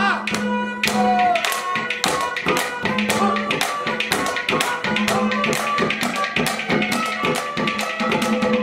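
Instrumental interlude of a live Haryanvi ragni: a harmonium holds steady notes over fast, even percussion, a quick run of sharp clicks and taps at about five or six strokes a second.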